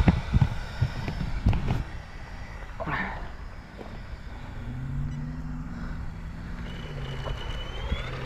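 Knocks and rubbing from the camera being handled and moved, then a low steady hum for a few seconds, with a faint high whine rising near the end.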